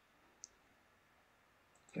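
Near silence with a single short, sharp computer mouse click about half a second in.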